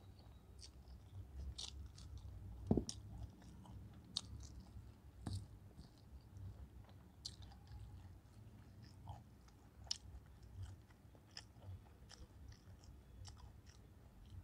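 Close-up chewing of chicken biryani and fried chicken eaten by hand, with many scattered wet mouth clicks and smacks. There is a louder thump about three seconds in and another a little after five seconds.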